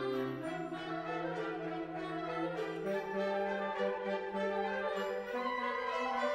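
Concert band playing a jazz-flavoured light orchestral piece, with brass to the fore holding sustained chords while the bass line steps upward every couple of seconds.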